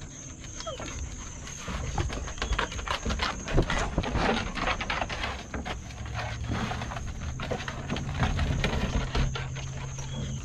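Basset hounds scrambling and running on a wooden deck after a flirt-pole lure, with flip-flop footsteps: an irregular clatter and scuffing of paws and feet on the boards.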